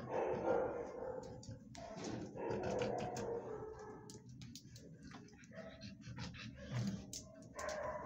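Dogs barking off and on, loudest near the start and again around two to three seconds in, with light clicks scattered between.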